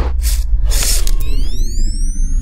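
Intro sound effects for an animated camera lens: mechanical ratchet-like clicking and two short bursts of noise over a deep steady bass, then several tones gliding upward together about a second in.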